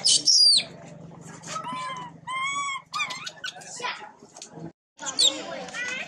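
Baby long-tailed macaque crying, with loud high-pitched squealing screams right at the start and again about five seconds in, and lower calls in between.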